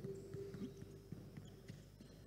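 Faint, irregular thuds of basketballs being dribbled on a gym floor, with a faint steady tone that stops near the end.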